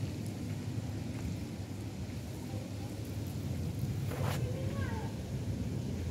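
Steady low outdoor rumble, with one sharp click about four seconds in, followed by a brief faint high chirp.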